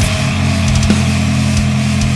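Death metal / hardcore band recording: down-tuned distorted guitars and bass hold a low chord, with a crash at the start and scattered kick-drum hits, no vocals.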